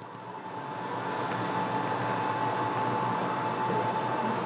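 Steady mechanical hum and hiss with a thin steady whine running through it, growing louder over the first couple of seconds and then holding level.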